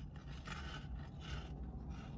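Chewing a crunchy cinnamon twist with the mouth closed: a few soft crunches about half a second and a second and a quarter in, over a low steady hum.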